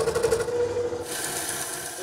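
Scroll saw running, its thin blade going up and down fast through a block of wood with a steady, even rattle. About a second in, a higher hiss of the cutting joins it.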